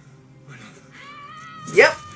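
A woman yelling angrily on a drama's soundtrack: a high, strained cry that starts about a second in and swells into a loud rising shout near the end, over background music.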